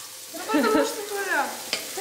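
Sliced onions sizzling in a hot frying pan as they are stirred with a wooden spatula. In the middle a person's voice makes a short wordless sound that falls in pitch.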